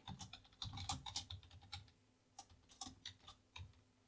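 Computer keyboard typing: a quick run of faint keystrokes, thinning to a few scattered presses in the second half.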